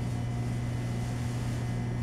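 Steady low background hum of the lab room, with no other sound standing out.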